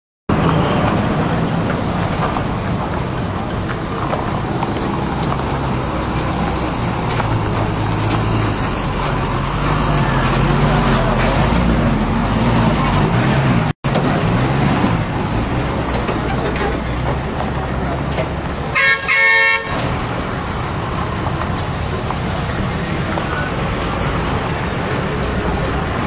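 Roadside traffic noise with a vehicle engine running steadily, and a vehicle horn sounding once for about a second, about three-quarters of the way through.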